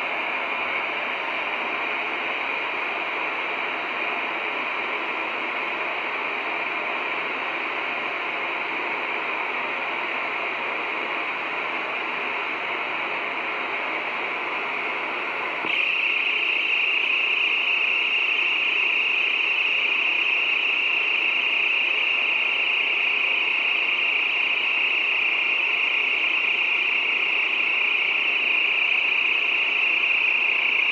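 Oxy-acetylene torch with a #3 tip burning with a steady hiss as it heats a copper tube in a condenser coil to braze a leak with silver solder. The hiss gets louder about halfway through.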